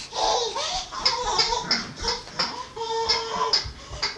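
A toddler laughing in short repeated bursts.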